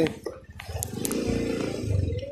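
Motorcycle engine running, rising in level about half a second in and holding steady.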